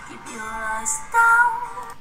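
A young woman singing a slow song in held, sustained notes, her loudest and highest note coming about a second in.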